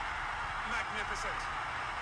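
A cricket match broadcast playing faintly in the background: steady stadium crowd noise with faint commentary.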